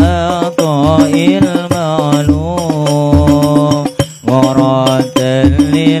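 Live Islamic sholawat singing: a male lead voice sings a long, ornamented melodic line through a microphone and PA, over rhythmic percussion.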